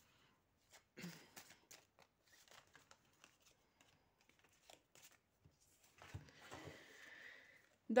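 A deck of tarot cards being shuffled and handled by hand: a faint run of quick card flicks and clicks, then a soft sliding rustle near the end as the cards are spread out across a cloth-covered table.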